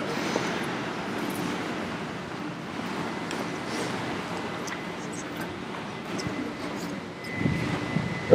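Steady outdoor background noise: a low, even hiss with a few faint clicks.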